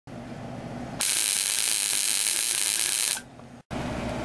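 High-voltage sparks from an ignition coil driven by a relay buzzer, snapping rapidly across a spark gap between two brass acorn nuts. It is a harsh, fast buzzing crackle that starts about a second in and stops abruptly about two seconds later, with a low hum before it.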